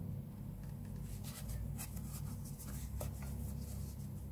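Crochet hook and T-shirt yarn rubbing and scratching as single crochet stitches are worked: a string of soft, scattered scratches over a steady low hum.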